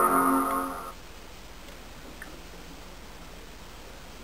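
iMac startup chime, a held chord, fading out about a second in as the machine boots after a hard reset; then only faint room hiss.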